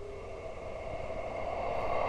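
A steady drone with a few faint held tones, slowly swelling: an ambient music bed under the trailer.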